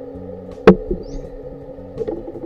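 A single sharp knock about a third of the way in, over a quiet bed of steady background music.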